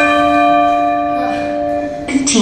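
A single bell tone struck once, ringing on with several held tones and slowly fading. It sounds as a timer bell marking the end of a timed workout round.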